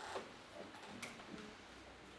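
Quiet classroom room tone with a few faint, irregular clicks.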